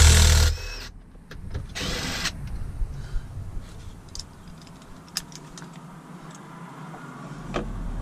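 Cordless drill/driver spinning out the top bolt of a pickup's door trim panel: a motor whine with a wavering pitch that stops about half a second in, then a second brief burst of noise around two seconds in, followed by light clicks of handling.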